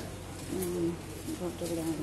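A woman's voice speaking in slow, drawn-out phrases.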